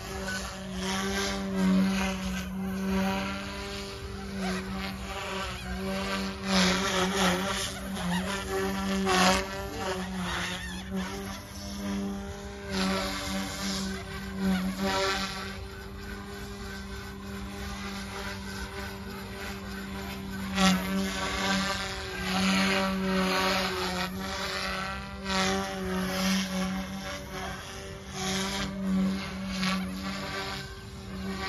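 Mikado Logo 200 electric RC helicopter in flight: a steady rotor hum with the motor's whine, and louder swells of blade noise every second or two that rise and fall in pitch as it manoeuvres.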